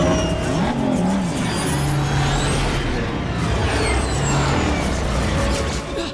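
Sci-fi space-battle sound effects: a loud, dense roar of spaceship engines sweeping past, with laser fire, many short gliding whooshes and sharp hits throughout.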